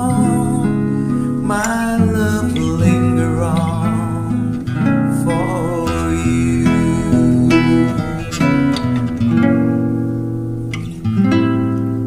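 Music: an instrumental passage of a slow love-song ballad led by acoustic guitar, with chords over a moving bass line.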